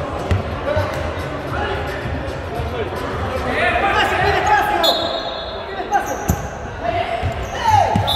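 Voices of players calling out, echoing in a gymnasium, with a few thuds of a futsal ball hitting the hardwood floor, the sharpest about six seconds in.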